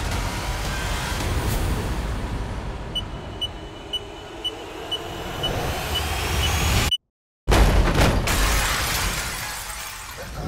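Cinematic trailer sound design: a low rumble under a short high beep that repeats about twice a second and speeds up. The sound cuts out suddenly for half a second, then a loud boom with crashing and shattering hits and dies away.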